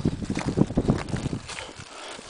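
Irregular low rumbling thumps of wind buffeting and handling noise on the microphone, heaviest in the first second and a half, then dying down.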